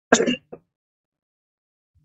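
A person briefly clears their throat: one short rasp just after the start, followed by a tiny second catch.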